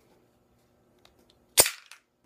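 Walther PK380 pistol's slide being worked by hand: faint small clicks, then one sharp metallic clack about one and a half seconds in, with a short ring and a lighter click right after.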